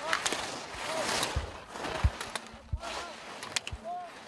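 Slalom skis carving on hard-packed snow, a hissing scrape that swells and fades with each turn, broken by sharp clacks of gate poles being struck and a few low thumps. A few short vocal calls cut through the hiss.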